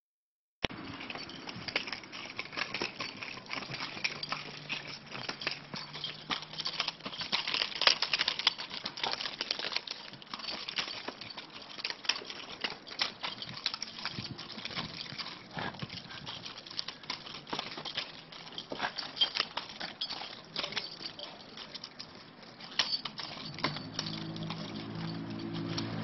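Nunchaku being twirled and swung: a steady run of irregular clicks and rattles from the chain and sticks. A man's voice comes in near the end.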